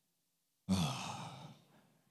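A man's breathy spoken "Amen" through a microphone, starting suddenly about two-thirds of a second in, falling in pitch and fading away over about a second.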